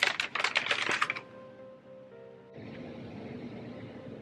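Rapid crinkling clicks of takeout food packaging being handled and opened, stopping about a second in. Soft background music carries on after that.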